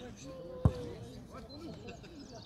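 A football kicked once, a single sharp thud about two-thirds of a second in, sending the ball up into a long ball, with faint shouts from players around it.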